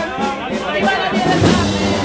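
Procession band (banda de música) playing a march, with held notes, while voices carry over it.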